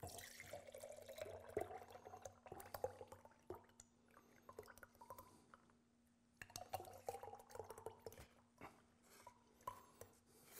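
Thick melted petroleum-jelly lure poured slowly from a small saucepan into glass jars, dripping and scraped along with a stick, with light taps against the glass. It comes in two spells, the first over the opening few seconds and the second a little past halfway, with a quieter pause between; faint throughout.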